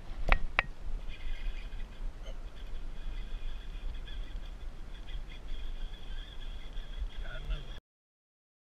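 Baitcasting reel being cranked to retrieve line, a steady high whir from the reel, after two sharp clicks near the start; the sound cuts off abruptly near the end.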